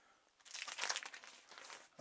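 Clear plastic sleeves of vinyl picture discs crinkling as the records are handled and flipped through. The rustling starts about half a second in, is loudest for the next half second, then fades.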